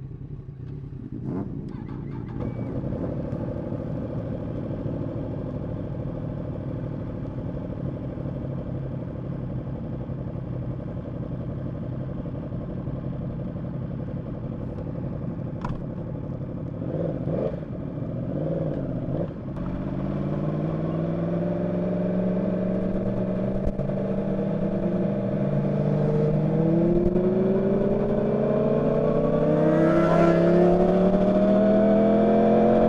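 Yamaha supersport motorcycle's inline-four engine, heard from the rider's seat, running steadily at low revs. In the last ten seconds it pulls away and accelerates through the gears: the engine note climbs repeatedly, dropping back at each upshift, and grows louder.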